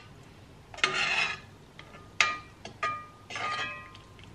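A slotted metal spoon scraping and clinking against a pot and a stainless-steel blender jug as cooked vegetables are lifted out and tipped in. There is a scrape about a second in, then three ringing metallic clinks.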